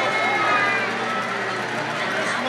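Indistinct chatter of many people talking at once, with no single clear voice, over a steady low hum.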